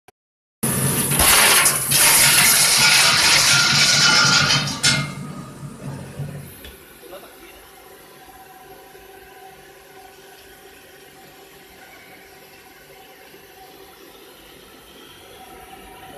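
A mass of plastic bottle caps poured from a bag into a stainless-steel cap feeder hopper, a loud rushing clatter that starts suddenly and tails off over a couple of seconds. Then only a low, steady factory machinery hum.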